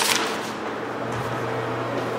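A short sharp knock, then a steady low hum that sets in just under a second later.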